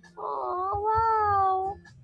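A cat meowing once: a single long, drawn-out meow.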